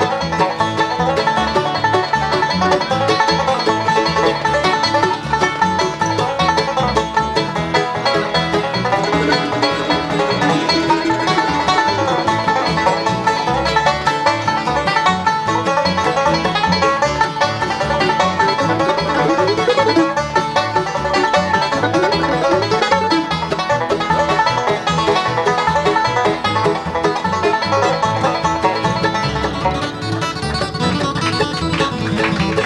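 Bluegrass band playing an instrumental with the five-string banjo taking the lead in fast, steady picking, backed by mandolin, acoustic guitar and upright bass.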